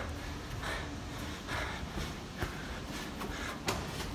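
A person breathing audibly close to the microphone, a soft breath about once a second, with a few faint clicks of the phone being handled over a low room hum.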